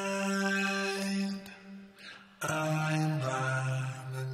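A sung vocal track played back through Logic Pro X's Ensemble chorus effect: long held, sustained notes. The voice drops away about a second and a half in and comes back strongly about two and a half seconds in.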